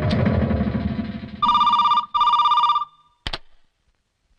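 A telephone rings with one double ring, two short bursts of a trilling electronic tone. A short click follows about a second later as the call is answered. Before the ring, a low rumbling score fades out.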